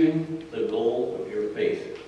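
Speech only: a man reading aloud.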